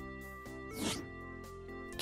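Quiet background music of held steady tones, with one short swishing sound effect about a second in.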